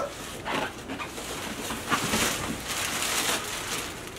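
Plastic wrapping crinkling and the cardboard box rustling as a heavy electric unicycle is hauled up out of it, with strained breaths from the effort. The rustling is loudest in the middle.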